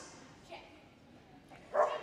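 A dog gives a short bark about half a second in, faint against the hall's background.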